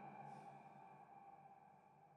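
Near silence: a few faint steady tones from the band's amplified instruments, still fading out.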